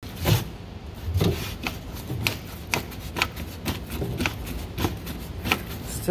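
Humvee accelerator pedal and throttle linkage being pumped by foot, clicking or knocking about twice a second, some strokes with a low thud and rubbing between them. The pedal is sticking, which the owner traces to a rusted timing advance on the DB2 injection pump.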